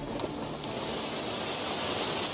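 A steady, loud hiss of steam rising off fire-heated rocks as they are doused, the old fire-setting way of cracking rock. The hiss grows a little stronger near the end.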